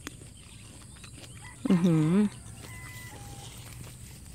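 A woman's short appreciative Thai exclamation, "ue-hue" (อื้อหือ), about two seconds in, its pitch dipping and then rising, as she tastes a freshly picked ripe mulberry.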